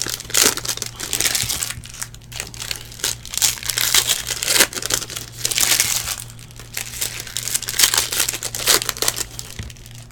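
Foil trading-card pack wrappers crinkling and tearing as they are ripped open by hand, in an irregular, busy crackle throughout.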